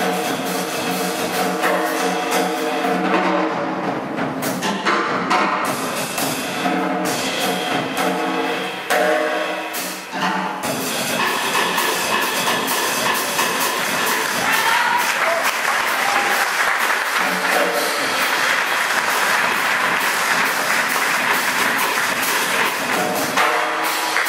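Jazz trio of piano, double bass and drum kit playing; about ten seconds in the music breaks off and the audience applauds for most of the remaining time.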